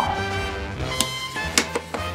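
Background music with steady held notes. A sharp click about a second in and a few lighter clicks near the end come from a die-cast toy car being pushed into a plastic Hot Wheels launcher toy.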